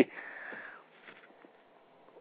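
A man's short breath in, a soft airy intake lasting under a second.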